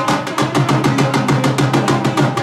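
Punjabi dhol played at a fast, driving beat, dense stick strokes following one another at an even pace.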